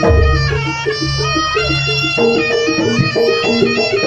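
Live East Javanese jaranan music: a slompret, a nasal-toned Javanese shawm, plays a melody that slides between notes over a steady beat of kendang drums and gamelan percussion.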